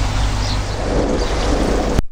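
Koi pond water splashing and churning steadily at the surface, over a steady low rumble.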